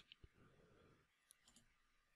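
Near silence: room tone with a few faint clicks, one shortly after the start and a small cluster a little past the middle.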